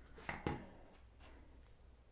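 A couple of faint light knocks in the first half-second, then quiet room tone.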